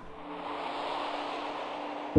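A soft rushing hiss that swells over the first second and then holds, a whoosh-style transition effect, over one faint held low note.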